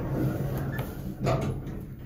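ThyssenKrupp hydraulic elevator running with a steady low hum, with a single knock about a second and a half in.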